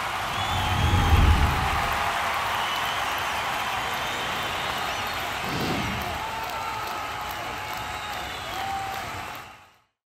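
Closing ident sound: music mixed with crowd cheering and applause, with a deep swell about a second in and another just before six seconds, fading out at the end.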